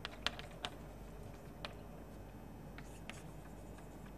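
Chalk writing on a chalkboard: irregular sharp taps and faint scratches as letters are chalked, about half a dozen taps spread across the few seconds.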